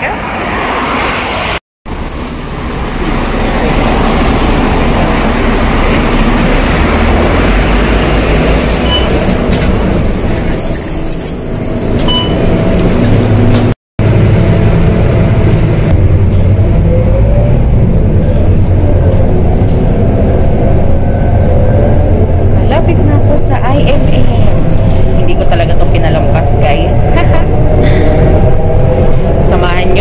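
City bus running through traffic, heard from inside the passenger cabin: a steady low engine and road rumble, with a rising whine over the last part as the bus gathers speed.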